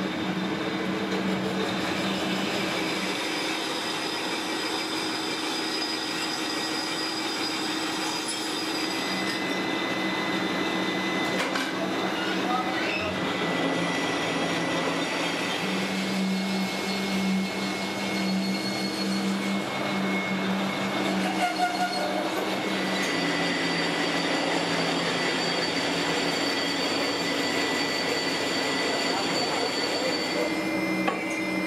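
Steady din of foundry machinery: a continuous rumbling drone carrying several high, steady whines that change in strength every few seconds.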